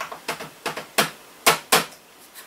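Plastic keys and case of a Toshiba Satellite laptop clicking as it is handled: a run of about eight sharp clicks, the loudest three in the second half.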